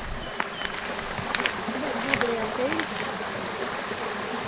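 Steady rush of flowing stream water, with a few light clicks through it.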